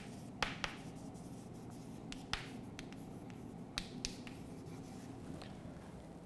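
Chalk writing on a chalkboard: a handful of short, sharp taps and light scrapes, spaced irregularly, as the chalk strikes the board and forms letters.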